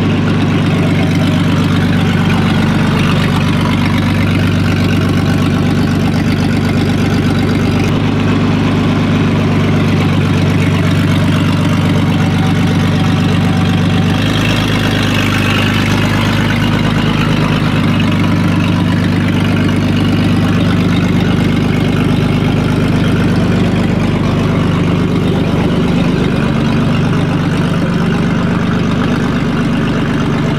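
1925 Hispano-Suiza H6C's straight-six engine running at low revs, a steady idle-like note, with a slight shift in its tone around the middle.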